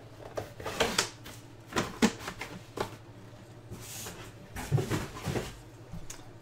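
Irregular clicks and knocks of a computer keyboard and mouse as a randomizer is being run, over a steady low hum.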